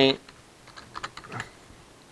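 Computer keyboard typing: a few faint, irregular keystrokes.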